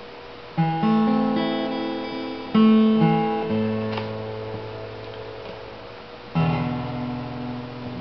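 Taylor 114e grand auditorium acoustic-electric guitar playing three slow chords, about half a second in, just before three seconds and past six seconds, each left to ring and fade.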